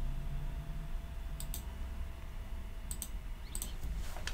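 Three pairs of sharp clicks from a computer's controls, about a second and a half apart, over a low steady hum.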